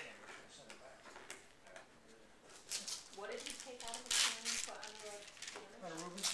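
Gift wrapping paper rustling and tearing as a present is unwrapped, loudest in the second half, with people talking in the room.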